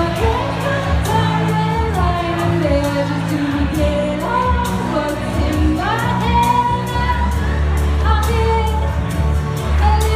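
A woman singing a pop melody into a microphone through the PA, over backing music with a steady beat.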